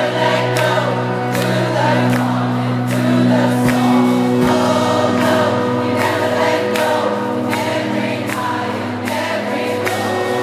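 Live rock band playing on stage: electric guitars, keyboards and a steady drum beat, with singing over it.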